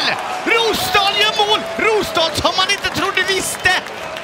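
Speech: a man's excited commentary voice.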